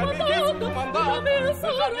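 An operatic singer singing a sustained, strongly vibrato-laden line over sustained orchestral accompaniment.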